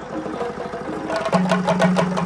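A troupe of barrel drums beaten with sticks in a fast, dense rhythm, growing louder about a second in.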